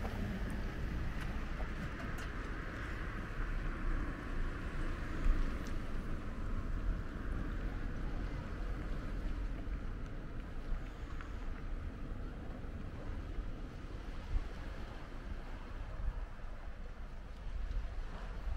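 Wind buffeting the microphone outdoors: a steady, uneven low rumble with a faint hiss over it.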